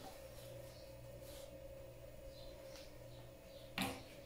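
Faint scraping of a spatula in a frying pan over a steady low hum, with a short sharp click just before the end.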